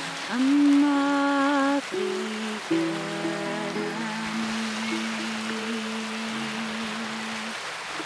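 A woman's voice sings two last held, wavering notes of a Scottish Gaelic song over acoustic guitar, then the guitar's final notes ring on and fade out, over a steady background wash of noise.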